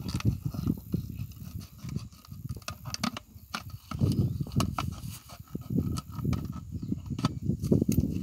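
Small scissors snipping through a thin plastic PET bottle, with irregular sharp clicks and crackles of the plastic as it is cut and handled.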